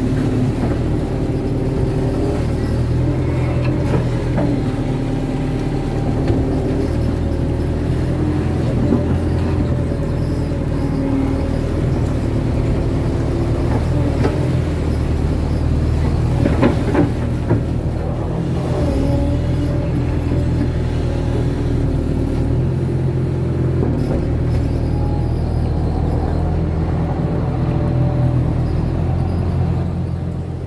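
Kato crawler excavator's diesel engine running under hydraulic load while digging wet mud, its pitch rising and falling as the boom and bucket work, with a few knocks of the bucket about seventeen seconds in.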